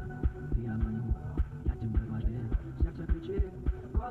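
Music with a steady low bass beat, about two strong beats a second, over sustained low tones.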